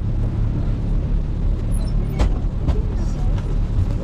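Minibus engine running steadily, a low rumble heard inside the passenger cabin, with one sharp click about two seconds in.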